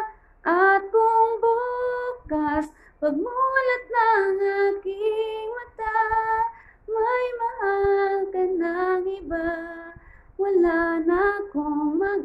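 A woman singing a Tagalog ballad in held, wavering phrases, with short breaks for breath between lines.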